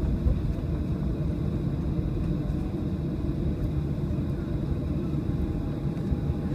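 Steady low rumble heard inside the cabin of a Boeing 737 taxiing after landing, its engines running at low power.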